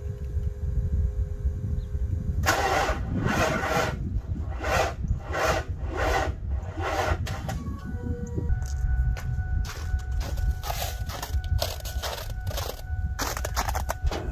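Ford 7.3L Powerstroke diesel cranking slowly on its starter without catching, in slow, even strokes of a little more than one a second: the batteries are too weak to start it. From about halfway through, a steady two-note tone sounds over further cranking.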